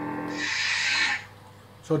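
Proffie-board lightsaber sound font: the steady blade hum ends and a hissing power-off sound plays from the hilt speaker for under a second, starting about half a second in, as the NeoPixel blade retracts.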